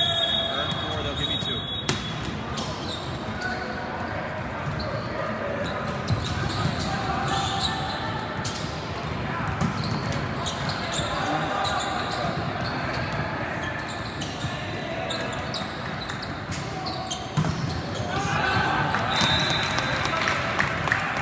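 Indoor volleyball rally in a large sports hall: the ball being served and struck, sharp hits and shoe sounds on the court, with players and spectators calling out. A referee's whistle blows at the start of the rally and again near the end.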